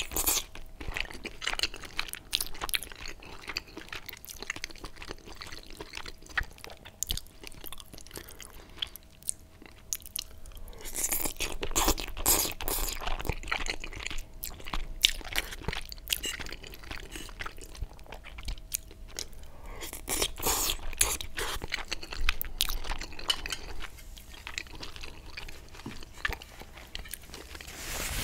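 Close-miked wet chewing and slurping of cheesy spaghetti bolognese, with many small sticky mouth clicks. There are longer slurps of noodles about eleven seconds in and again around twenty seconds.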